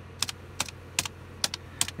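Keystrokes on an old DOS-era computer keyboard as a command is typed: about seven sharp, separate key clicks at an uneven pace, over a low steady hum.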